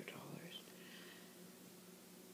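A soft whispered voice trailing off in the first half second, then near silence: quiet room tone with a faint steady hum.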